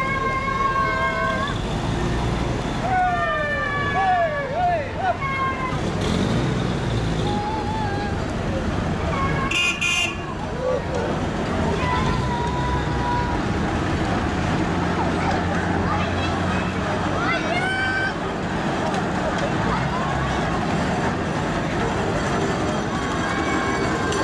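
Vintage WWII military vehicles such as Willys jeeps running past at low speed, a low engine rumble under crowd voices. A vehicle horn sounds for about a second and a half at the start, and a short high-pitched toot comes about ten seconds in.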